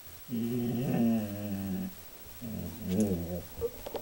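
A dog growling low: two drawn-out growls, the first about a second and a half long, the second shorter and starting about halfway through.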